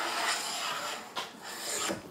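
Hand plane shaving the edge of a board clamped in a workbench vise: two long scraping strokes, the second starting just over a second in.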